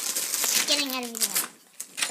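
Rustling and light clicks of paper and plastic toy pieces being handled, with a short, falling vocal sound in the middle.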